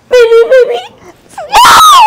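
A woman crying in short, high-pitched sobbing wails, breaking into a loud, high scream near the end that falls in pitch.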